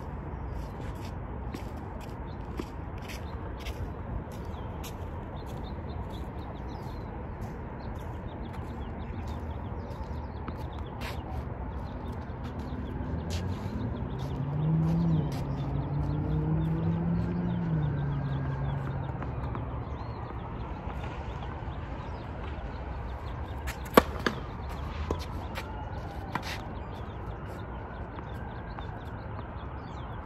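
Open-air ambience on a tennis court between points, a steady low background noise with a low hum that swells and fades midway. About three-quarters of the way through comes one sharp knock of a tennis ball, then a few lighter knocks.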